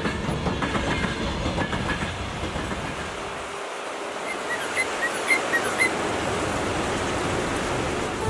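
Freight train wagons rolling past, a rumble with clattering over the rail joints, giving way after about three seconds to the even rushing of a fast-flowing river, with a few short high chirps in the middle.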